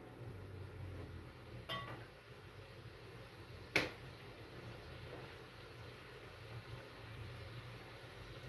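Metal cooking spoon against a frying pan: a small ringing clink about two seconds in, then a single sharp knock just before the four-second mark as the spoon is set down in the pan. A faint steady low hum runs underneath.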